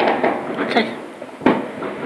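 Fireworks going off: a single sharp bang about one and a half seconds in, over continuous crackling.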